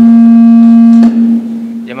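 Loud public-address microphone feedback: a steady low howl held at one pitch that cuts off sharply about a second in, then lingers faintly.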